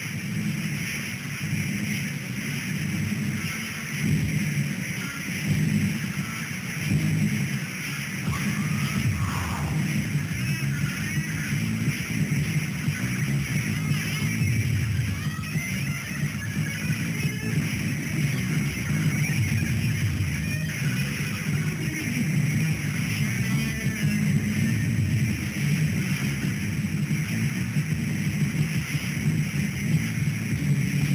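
Thrash metal on an early demo recording: distorted electric guitars and drums playing continuously.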